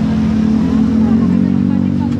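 A motor vehicle's engine running close by in street traffic, a steady low hum that rises slightly in pitch about half a second in and then holds.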